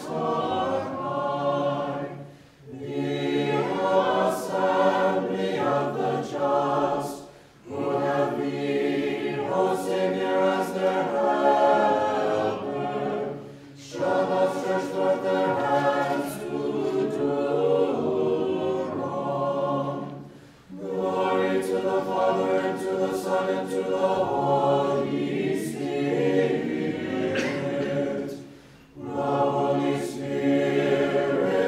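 Unaccompanied choir singing an Orthodox funeral hymn, in phrases of about five to seven seconds with short breaks between them.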